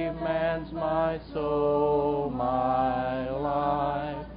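A slow hymn sung in long held notes, the pitch stepping to a new note about once a second.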